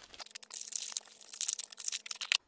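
Thin clear plastic bag crinkling as it is handled, a rapid, uneven run of sharp crackles.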